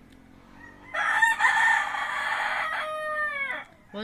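A rooster crowing once, starting about a second in. The long call falls in pitch as it ends.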